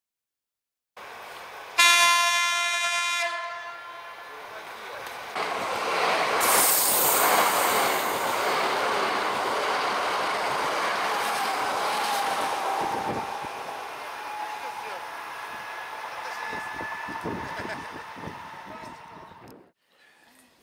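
Electric passenger train sounding one horn blast of about a second and a half, about two seconds in, then approaching and passing close by with a loud rush of wheels on the rails and a steady tone beneath it. The sound fades as the train goes and cuts off just before the end.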